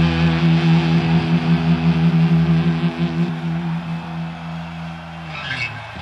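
A heavy-metal band's distorted electric guitar chord held and ringing out at the end of a song. It fades from about halfway through and slides down in pitch near the end.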